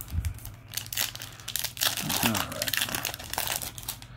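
Foil Yu-Gi-Oh! booster pack wrapper crinkling as it is handled and opened, a dense run of crackles lasting about three seconds.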